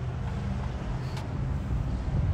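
Steady low rumble of outdoor background noise, with a faint click about a second in.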